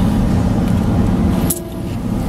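Steady low rumble of a car's engine and road noise heard from inside the cabin while driving slowly in traffic. A sharp click comes about one and a half seconds in, after which the sound briefly drops quieter.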